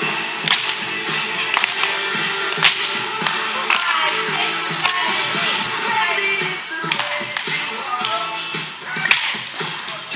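Music playing for a cheer dance routine, with sharp percussive hits about once a second.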